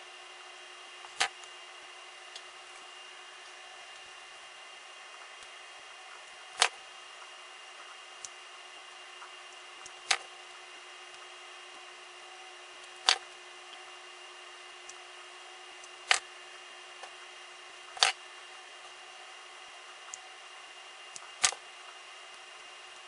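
Seven sharp clicks a few seconds apart over a faint steady hiss: a knife tip picking at and lifting the backing off double-sided tape on a thin metal viewfinder bracket.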